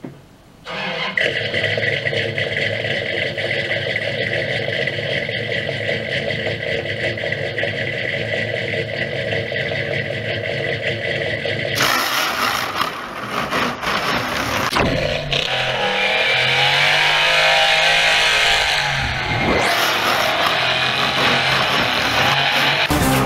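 A car engine starts about a second in and idles steadily, then from about twelve seconds it revs up and down under a loud screeching hiss of spinning tyres, as in a burnout.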